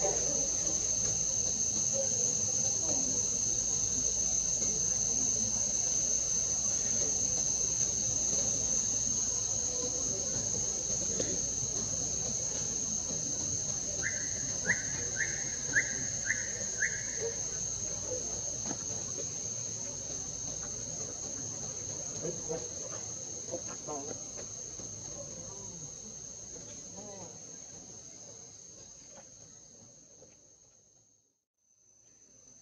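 Steady, high-pitched drone of insects. About halfway through comes a quick run of five short chirps, and the whole sound fades away toward the end.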